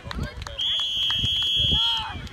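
A referee's whistle in one long, steady, high blast, starting about half a second in and lasting about a second and a half, blowing the play dead. Voices can be heard around it.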